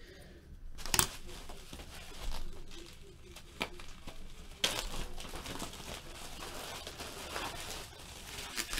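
Plastic packaging crinkling and rustling as a thin plastic bag is handled and pulled open, with sharp clicks about a second in and again about halfway through, and a louder rustle just after.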